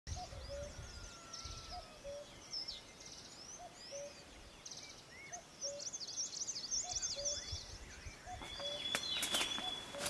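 Forest ambience with several birds chirping and calling high-pitched, over a low two-note call that repeats about every second and a half. Near the end a steady high whistle and a few sharp clicks come in.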